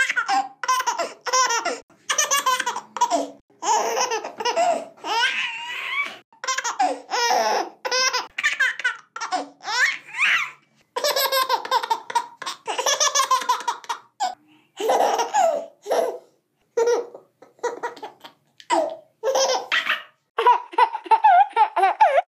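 Baby laughing in repeated high-pitched bursts, broken by brief silences.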